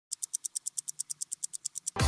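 Rapid, even ticking sound effect, about nine sharp high ticks a second, leading into the intro. Loud electronic theme music cuts in at the very end.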